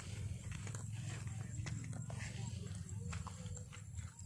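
Footsteps in rubber boots through wet grass and brush on soft, muddy ground: faint scattered clicks and rustles over a steady low rumble.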